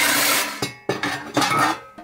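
Tin snips and a thin sheet-steel panel from an old microwave clattering and scraping as they are handled. There is a loud, harsh metallic noise in the first half second, then fainter metallic rattling.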